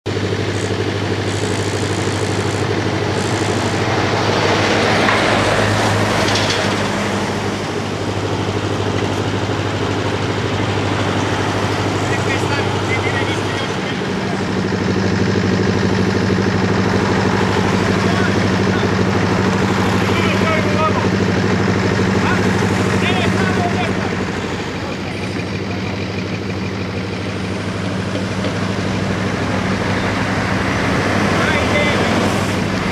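Motorway traffic with heavy trucks and cars running, a steady engine hum throughout, and voices faintly in the background.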